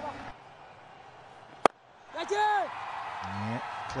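A single sharp crack of a cricket bat striking the ball, a little over a second and a half in, in an otherwise quiet stretch.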